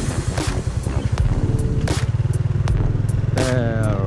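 Small Honda motorcycle engine running as the bike rides off along a rough dirt track, in a quick, even low pulse, with a few sharp clicks over it.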